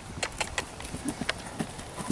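Hoofbeats of a horse cantering on a grass and dirt track: a string of short, uneven thuds.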